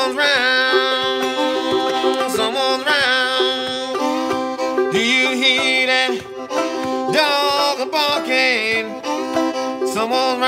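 Fiddle and banjo playing together in old-time style: the fiddle's bowed melody slides between notes over the banjo's steady plucked rhythm.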